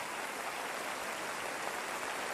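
Steady, even crowd clapping in the anime's soundtrack, slow and haunting in tone.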